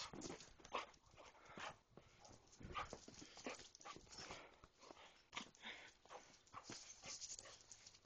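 Basset hound puppy making short, faint play growls while mouthing and tugging at a sleeve, mixed with scattered knocks and rustles from clothing and the handheld camera.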